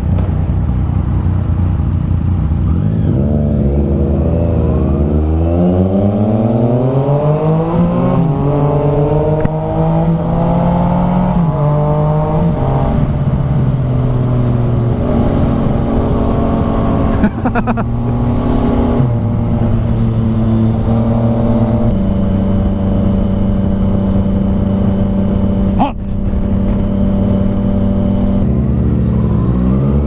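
Yamaha FZ-09's inline three-cylinder engine at low revs, then pulling hard with its pitch climbing and dropping back through several upshifts before settling to a steady cruise. Near the end it slows and picks up again.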